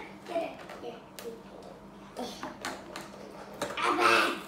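Clear plastic toy packaging being handled and worked open by hand, giving a series of scattered sharp clicks and crackles.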